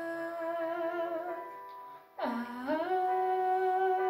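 A girl singing long wordless held notes, each sliding up into pitch: one note fades about a second and a half in, and the next begins about two seconds in. The echo of a small tiled room is on the voice.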